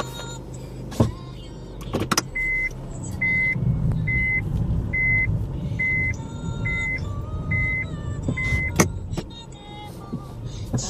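A car's in-cabin reverse warning beeper sounds eight short beeps on one steady pitch, a little under a second apart, over the low rumble of the car rolling as it manoeuvres. Sharp knocks come about a second in, at about two seconds, and near the end.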